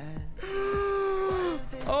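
A person's long, drawn-out excited vocal "ooh", held on one pitch and dropping off at the end, followed near the end by a second, higher cry.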